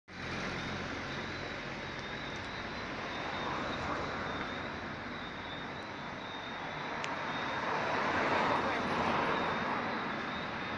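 Road traffic passing: engine and tyre noise from cars, swelling as one car approaches near the end, over a steady high-pitched tone.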